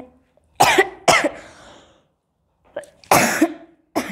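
A person coughing: two sharp coughs in quick succession about half a second in, then one longer cough about three seconds in.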